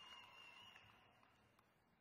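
Near silence: faint hall room tone, with a faint high steady tone that stops less than a second in.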